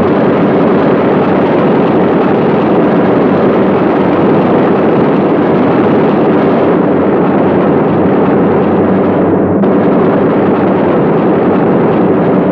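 Steady, dense roar of B-17 Flying Fortress bombers' radial engines in flight, unbroken and without distinct separate shots or blasts.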